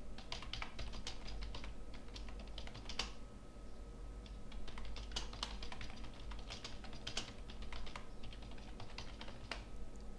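Computer keyboard typing: quick, irregular runs of keystrokes with a short lull a few seconds in, as a line of text is typed in.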